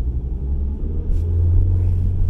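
Low, steady rumble of a car cabin while driving, engine and road noise together, growing a little stronger about halfway through.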